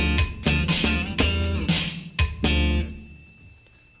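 Electric bass played with slap technique: a fast run of sharp thumb-slapped and popped notes with a deep low end. The playing stops about two and a half seconds in, and the last note fades out.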